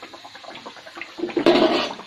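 A spoonful of pitha batter dropped into hot oil, frying up in a loud burst of sizzling about a second in and settling back to a steady low crackle of bubbling oil.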